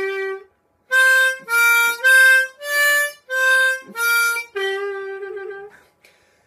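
Bb diatonic harmonica played in third position. A short bent note sounds, then after a brief pause six short notes step up and down (draw 4, blow 4, draw 4, blow 5, draw 4, blow 4). The phrase drops to a longer held bent note on draw 3.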